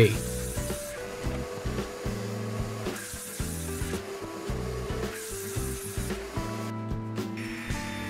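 Thick maple boards sliding and rubbing along a workbench in several separate pushes, over quiet background music.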